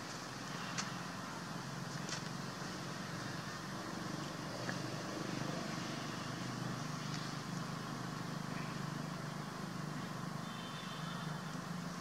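Steady outdoor background noise with a low hum, broken by a few faint sharp clicks in the first few seconds.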